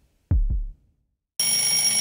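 A slow heartbeat, one low double thump about a third of a second in: the simulated pulse of a Petit Qoobo robot cushion. About a second and a half in, a twin-bell alarm clock starts ringing loudly and keeps on.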